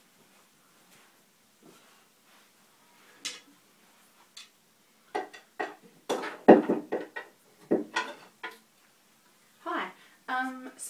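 Short clattering knocks of hard objects being handled, a few scattered at first, then a quick run of them in the second half.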